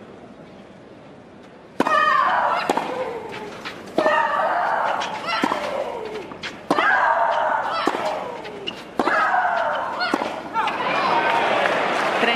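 Tennis rally: racket strikes about every one to one and a half seconds, each with a loud shriek from the hitting player that falls in pitch. Crowd applause rises after the last shot near the end.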